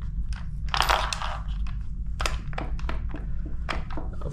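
Small metal clicks and light rattles of a velo-style bicycle saddle clamp as its bolt is turned out by hand and the clamp plates shift, with a brief scraping noise about a second in.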